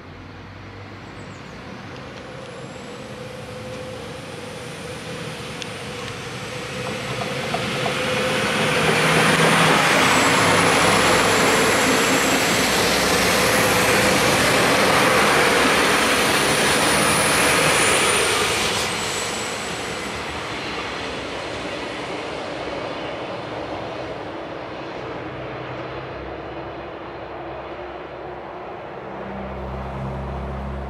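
Two coupled DB Regio diesel multiple units (Alstom Coradia LINT 41) pull away from the station and pass at close range. Engine and wheel noise grow over the first several seconds, stay loudest for about ten seconds as the cars go by with a thin high whine on top, then fade as the train leaves.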